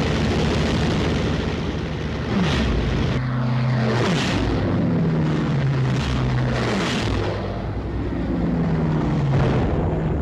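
Hawker Sea Fury fighters' radial piston engines running in close fly-pasts. The engine note swells and drops in pitch as each plane passes, several times.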